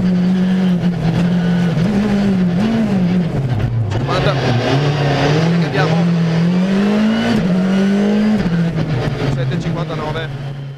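Skoda Fabia R5 rally car's turbocharged 1.6-litre four-cylinder engine heard from inside the cabin, driven hard along the stage with its pitch rising and falling. About three and a half seconds in it drops low, then climbs again. It begins to fade in the last second.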